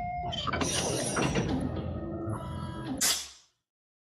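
Sound effects of an animated intro: mechanical whirring and clanking that goes with a CGI robotic arm moving, with a loud swish about three seconds in, after which the sound cuts off.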